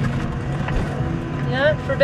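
Tractor engine running steadily, heard from inside the cab as a low drone, with a voice starting near the end.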